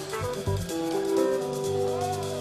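Live band instrumental: a keyboard playing held chords over electric bass notes, with the bass coming in stronger near the end.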